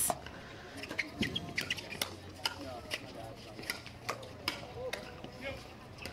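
Pickleball paddles hitting the ball back and forth in a dink rally, a sharp pop roughly every half second to a second.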